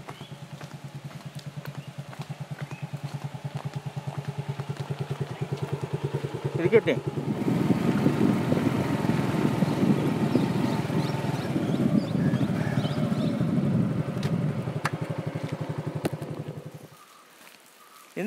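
A small two-wheeler engine running steadily under way, growing louder about seven seconds in and cutting off about a second before the end.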